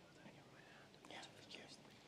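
Near silence, with faint whispering about a second in.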